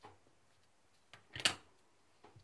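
A hand stamp knocking against the fabric-covered board as it is pressed down and lifted: a soft click at the start, then a louder quick double knock about a second and a half in.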